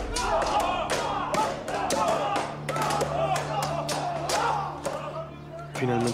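Curved swords striking round brass shields in quick, irregular clashes, over background music with a low held note.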